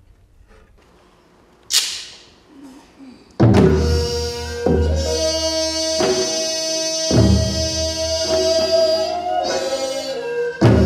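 One sharp wooden clap just under two seconds in, the bak clapper that signals the start of Korean court music. About a second and a half later the court ensemble begins: long held wind tones over deep drum strokes about every 1.2 seconds.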